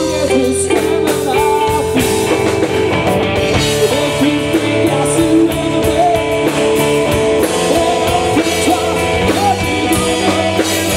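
A live blues-rock trio playing: electric guitar over electric bass and a drum kit, with bending guitar notes.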